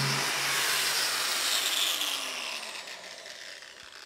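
Angle grinder spinning a Norton EasyTrim flap disc against a sharp 90-degree steel edge, trimming away the disc's nylon backing plate to free fresh abrasive flaps: a steady, hissing, rasping grind that fades out over the last second or so as the grinder winds down.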